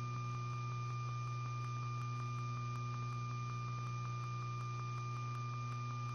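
Steady electrical hum with a thin high whine in an idle broadcast audio line, with faint regular ticking.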